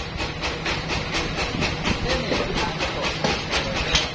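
Band sawmill running, with a rapid, even clatter over a steady hum.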